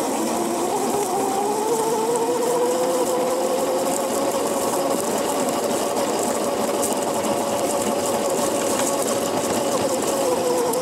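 Electric Razor go-kart motor whining as the kart picks up speed, its pitch rising over the first couple of seconds and then holding steady, over the noisy rush of the wheels rolling across grass and dirt.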